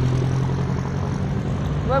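Roadside traffic: a nearby vehicle engine running with a steady low hum over road noise.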